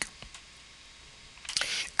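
A pause in a man's speech: faint room noise with a couple of small clicks, then a short breath drawn in about one and a half seconds in.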